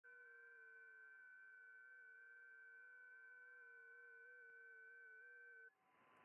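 FT8 digital-mode signals heard through a ham radio receiver on 20 metres: several faint whistling tones at different pitches, each hopping in small pitch steps. They all stop together near the end as the 15-second FT8 transmit period closes, leaving receiver hiss.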